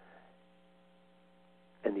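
Faint, steady electrical hum in a gap between a man's words, his voice starting again near the end.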